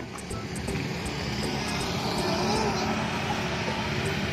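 Steady outdoor background noise with a low rumble, and faint music underneath.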